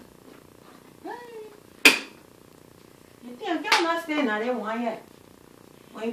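A single sharp clack from the dishwasher about two seconds in, the loudest sound here. A short vocal sound comes just before it, and a voice sounds for about two seconds after it.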